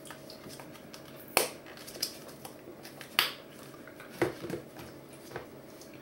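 Small plastic tub of body scrub being closed and handled: a few sharp clicks and taps of its plastic lid and body, the two loudest about a second and a half and three seconds in.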